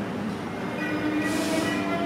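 Music played from a vinyl record on an Audio-Technica AT-LP60 turntable through small powered speakers: sustained held chords, with a brief swishing hiss about a second and a half in.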